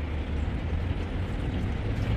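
Water splashing from a swimmer's breaststroke kicks and arm strokes, heard as an even wash of noise over a steady low rumble.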